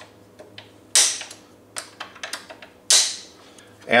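Metal clinks of hand tools and screws on a power wheelchair's metal seat frame as the leg-rest screws are loosened. There are two sharp clinks with a short ringing tail, about two seconds apart, and lighter ticks between them.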